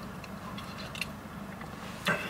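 A few faint, short taps of fingers on a smartphone touchscreen over the quiet background of a parked car's cabin.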